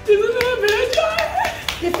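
A person's voice crying out in a drawn-out, wavering tone, with a few sharp hand claps.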